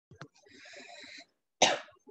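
A woman coughs once, sharply, about one and a half seconds in, after a quieter stretch of hiss.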